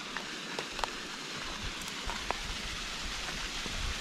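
Steady rushing of a waterfall pouring down a narrow rock gorge, with a few faint ticks.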